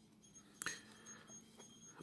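Near silence, broken about two-thirds of a second in by one faint click of a plastic action figure being handled, with a few softer ticks after it.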